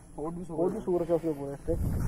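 Only speech: voices talking, the words not made out.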